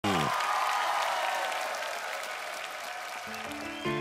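Studio audience applauding, the clapping fading over the first few seconds; sustained piano chords come in near the end.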